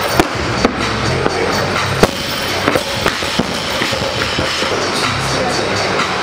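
Music with a steady beat, broken by a few sharp bangs of a barbell with rubber bumper plates dropped onto a lifting platform, the loudest about two seconds in.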